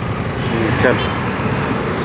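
Steady street traffic noise: a continuous rumble of small engines from motor scooters and auto-rickshaws running close by.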